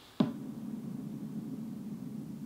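A sudden cinematic boom sound effect hits about a fifth of a second in, followed by a low, sustained synth tone that lingers to the end.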